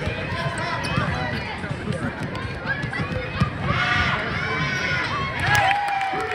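Basketball being dribbled on a hardwood gym floor, with a run of short knocks, and sneakers running the court. Voices call out over it, loudest about halfway through.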